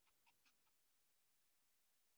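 Near silence, with four faint clicks in the first second.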